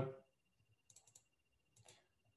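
Faint computer mouse clicks: a quick run of three about a second in and another near the end, over near silence.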